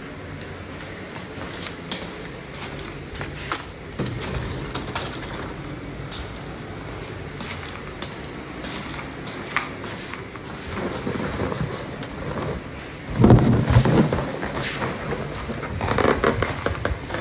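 Foil balloons crinkling and rustling as they are handled, with scattered sharp crackles and a louder stretch of rustling and bumps near the end.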